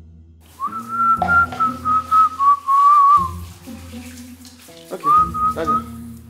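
A whistled tune: a single high note, slightly wavering and dipping, held from about half a second in to past three seconds, then a shorter whistled phrase near the end, over a steady background music bed.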